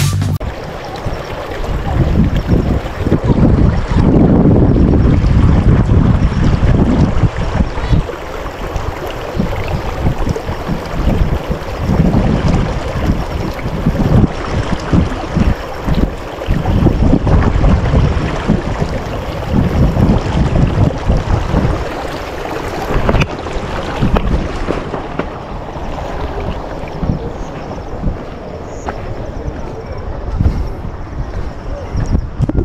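Wind buffeting the camera microphone in uneven gusts, a loud low rumble that swells and drops.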